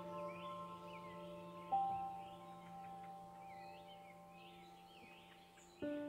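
Soft ambient background music of slow, ringing bell-like notes that fade away, with a new note struck about two seconds in and another chord near the end, over continual bird chirping.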